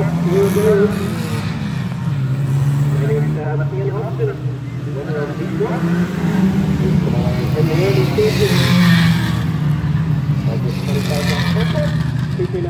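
Engines of a small pack of saloon race cars accelerating away at a race start and running round the oval. The engine note swells louder about eight seconds in, and a voice carries over the track noise.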